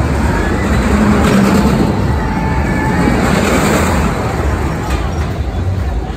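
Roller coaster train running along its track: a rushing rumble that swells from about a second in, is loudest around three to four seconds in, then eases.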